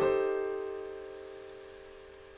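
A four-note A minor 7 flat 5 chord (E flat, G, A, C, with C on top) struck once on a digital piano and left to ring. It fades slowly.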